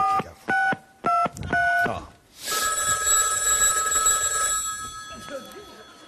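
Four short two-tone keypad beeps as a telephone number is dialled, then a telephone ringing for about two and a half seconds, unanswered.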